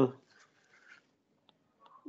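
A man's drawn-out hesitation 'uh' fades out at the start, followed by faint stylus strokes and a light tap on a tablet screen as he writes, with near silence around them.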